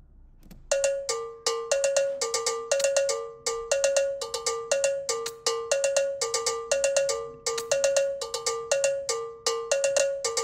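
A synthesized cowbell starts suddenly about a second in and plays a quick, syncopated two-note pattern, alternating a higher and a lower pitch. The pattern loops steadily as a programmed electronic beat.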